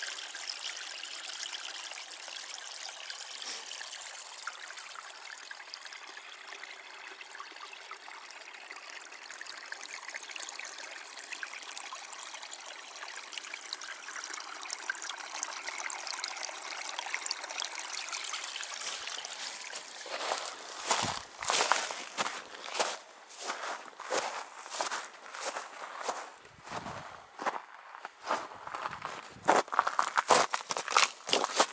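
A small brook trickling steadily over stones and under thin ice. From about two-thirds of the way in, a run of loud crunching footsteps on frozen, frosted ground takes over.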